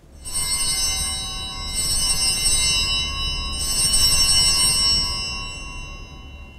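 Altar bells (Sanctus bells) rung at the elevation of the chalice during the consecration: a cluster of small bells ringing in three peals, the ringing fading away near the end.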